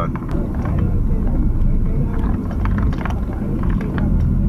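Car cabin noise while driving: a steady low engine and road rumble, with scattered faint clicks and rattles.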